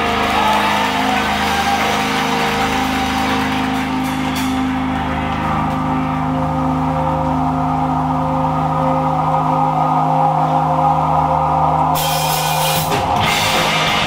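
Live rock band playing an instrumental passage: electric guitars and bass holding sustained chords over the drums. Near the end a cymbal crash hits and the held chords give way to busier playing.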